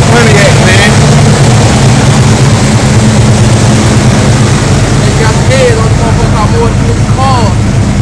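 Pontiac Trans Am's V8 engine idling steadily, with people's voices faintly in the background.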